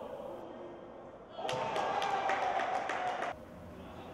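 Natural sound of a basketball game in a gym: a long held shout over a quick run of claps, starting about a second and a half in and cutting off abruptly near the end.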